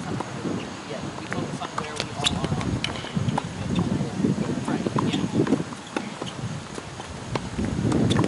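Irregular sharp pops of tennis balls struck by racquets and bouncing on hard courts, over a low background murmur with faint voices.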